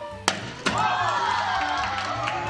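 A sharp smack of a baseball striking something, followed a moment later by a second knock. Then a group of children shout and cheer together, many voices at once, over background music.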